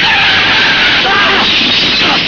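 Car tyres screeching as a car drives hard, the screech wandering up and down in pitch over engine and road noise.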